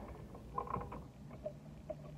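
Light clicks and rustling from someone shifting and reaching around in a car's driver's seat, heard inside the cabin, with a low steady hum coming in about a second in.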